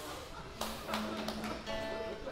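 Acoustic guitar between phrases: a few light taps, then a low note ringing from about halfway in, with a higher note joining near the end.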